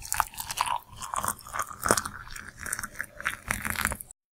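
Water poured into a mug of coffee: an irregular, splashing pour that runs on for about four seconds.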